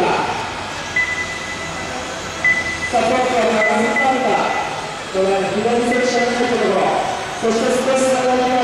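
Electric 1/12-scale RC pan cars racing on an indoor carpet track: a steady mechanical whine, with a high thin tone that comes and goes. From about three seconds in, a race commentator talks over it through the hall's PA.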